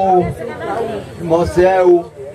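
Speech only: a man talking into a handheld microphone, in two phrases.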